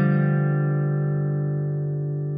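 A strummed guitar chord ringing out and slowly fading, with no new notes played.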